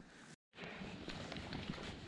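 Faint, even outdoor background noise, broken by a brief dropout of all sound about half a second in.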